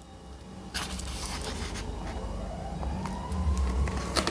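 Paper and card handling: rustling and light taps from a paperback guidebook and an oracle card being moved, over a low steady rumble. A faint tone rises in pitch through the last second and a half.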